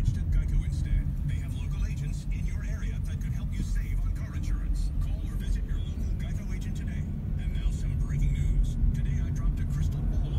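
Steady low rumble of a car driving slowly, heard from inside the cabin: engine and tyre noise.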